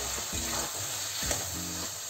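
Potato and tomato masala sizzling in a metal kadhai while a flat metal spatula stirs and scrapes through it.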